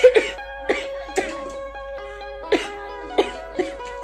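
A woman coughing with her hand over her mouth: about seven short coughs, the first two at the start the loudest. Background music with held notes plays under the coughs.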